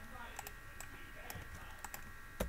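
Faint, scattered keystrokes on a computer keyboard, about half a dozen separate clicks, over a steady faint high hum.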